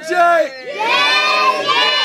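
A group of young children shouting and cheering together, many high voices at once. It swells into a loud burst about half a second in and stops abruptly at the end.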